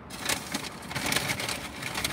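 Paper fast-food bags and fry cartons rustling and crinkling as food is handled and unpacked, a dense run of small crackles.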